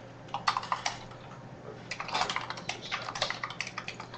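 Typing on a computer keyboard: a short run of rapid key clicks about half a second in, then a longer run from about two seconds in, over a faint steady low hum.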